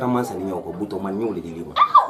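People talking in Malinké, with a brief high-pitched vocal sound near the end.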